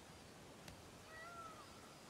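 Near silence with faint outdoor background hiss. A faint click comes about two-thirds of a second in, then a short, faint animal call that rises slightly and drops at its end, lasting about half a second.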